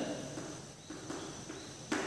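Chalk writing on a blackboard: a few short, faint scratchy strokes, then a sharp tap of the chalk just before the end.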